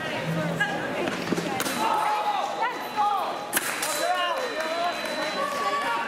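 Sabre fencing action in a large hall: shouting voices, with two sharp knocks about a second and a half and three and a half seconds in.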